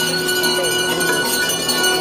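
Devotional music with bells ringing steadily throughout.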